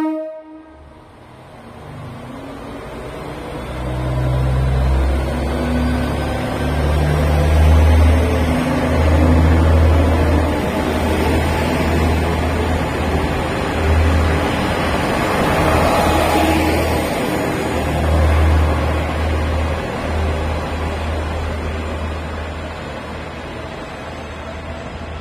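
Kawasemi Yamasemi KiHa 47-based diesel railcar pulling away from the platform. Its engine under load makes a deep throbbing rumble that builds from about four seconds in, with wheel and rail noise as the cars roll past close by. The sound eases off near the end as the train draws away.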